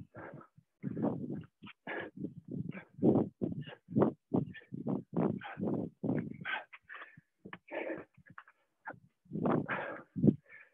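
Hard, quick breathing of two people exercising at full effort: short puffs and gasps coming several times a second, irregular, as they move through push-ups and sit-ups.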